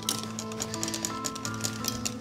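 Background music of soft sustained chords over a quick, steady ticking of a wire whisk beating cake batter against a glass bowl.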